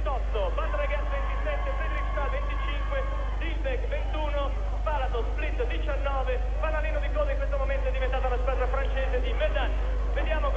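Several voices talking at once in the background, with no single clear speaker, over a steady low hum.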